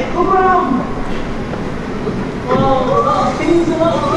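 People talking indistinctly, over a steady low rumble.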